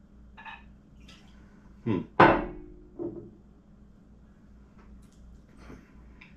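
Glassware set down on a hard stone tabletop about two seconds in: a sharp knock with a brief glassy ring, then a softer knock about a second later.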